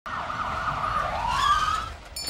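Ambulance siren wailing over a low rumble, its pitch sliding down and then back up before it stops at the end.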